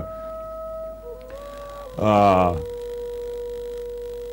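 Soft background music of long held notes that step down in pitch twice, with a short voiced hesitation sound from a man about two seconds in.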